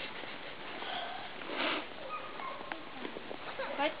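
Faint, distant voices with a short breathy, sniff-like noise about halfway through, and a voice rising near the end.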